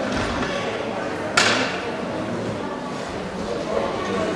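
Background voices murmuring in a large sports hall, with a single sharp bang about a second and a half in.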